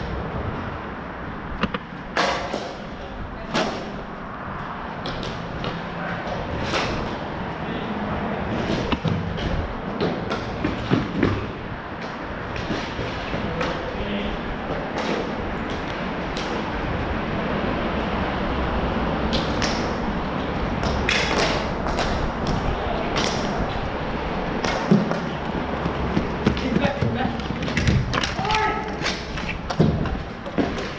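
Hockey sticks clacking and striking a ball on plastic sport-court tiles during play, as many sharp clicks and taps at irregular intervals over a steady rushing background.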